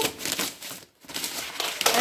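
Scissors cutting through packing tape and the cardboard top of a parcel box, in two stretches with a short pause about halfway.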